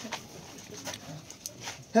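Faint background voices of a small group of people, with a few soft clicks. A loud pitched call or voice begins right at the very end.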